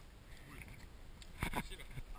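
Quiet outdoor background with faint voices and one brief bump about one and a half seconds in.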